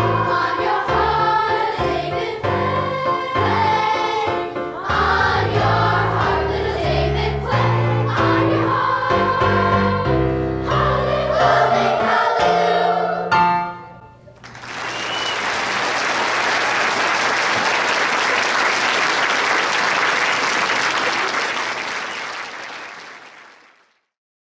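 Children's choir singing with instrumental accompaniment, ending about halfway through on a held final chord. An audience then applauds, and the applause fades out near the end.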